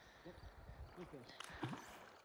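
Very quiet: a faint, distant voice making a few short sounds, over a low rumble.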